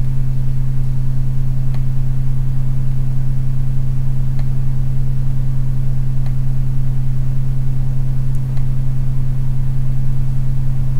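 A steady low hum with a few faint clicks scattered through it.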